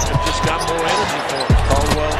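Basketball bouncing on a hardwood court in NBA game audio, with a music bed underneath that briefly drops out about a second in.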